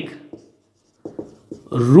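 Marker pen writing on a whiteboard: a few faint short strokes and taps, with a man's voice at the start and again near the end.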